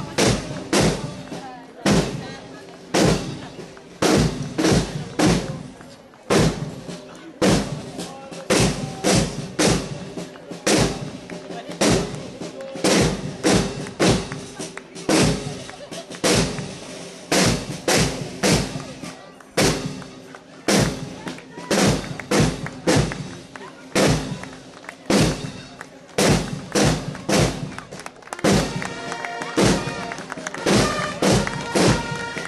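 School marching band drums playing a marching beat: hard, rhythmic snare and bass drum strikes, two to three a second, in repeating groups. Near the end, higher pitched instrument notes join the drums.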